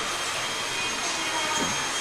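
Steady whooshing machine noise with a faint, steady high-pitched whine.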